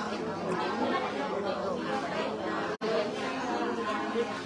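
Several people chatting at once in a room, a steady babble of overlapping voices, cut off for an instant about three-quarters of the way through.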